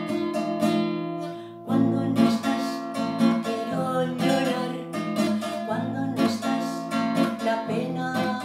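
Nylon-string classical guitar strummed in a steady rhythmic pattern, with a woman singing over it from about two seconds in.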